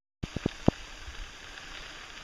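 A steady rushing noise cuts in just after the start, with a few sharp clicks in its first half-second.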